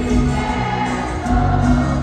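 Live norteño-cumbia band playing through an arena sound system, with accordion, guitars, bass and drums under singing voices.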